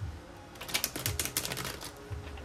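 A deck of cards being shuffled by hand: a quick run of crisp card flicks starting about half a second in and lasting just over a second.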